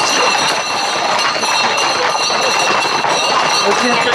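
Voices of men shouting over the hooves of a tight pack of Camargue horses moving fast on a paved road, with a steady high buzz throughout.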